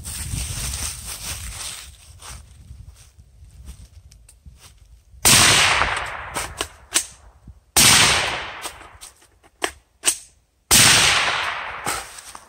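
Suppressed short-barreled AR-15 firing: three loud shots about two and a half to three seconds apart, each ringing out and fading over a second or so, with fainter sharp clicks and cracks between them.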